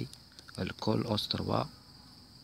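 A man's voice speaking briefly in the middle, over a steady high-pitched tone that runs underneath throughout.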